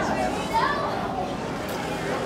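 Background chatter of children and adults, with a short raised voice about half a second in.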